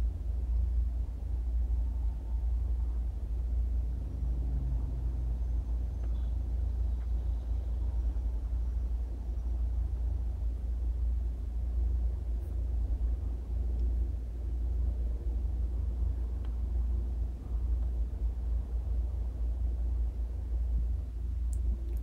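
A steady low background rumble that never changes, with no other sound standing out.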